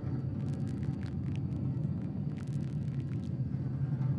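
Electroacoustic improvised music: a steady low rumble with scattered small clicks and crackles over it, in two loose clusters.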